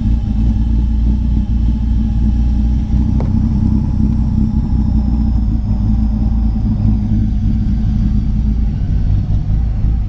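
Supercharged V6 car engine idling steadily, heard from inside the cabin. The idle is holding rather than hunting up and down, though still a bit lumpy. A single faint click comes about three seconds in.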